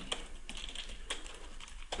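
Computer keyboard being typed on: a scattering of faint, irregular keystrokes as a line of code is entered.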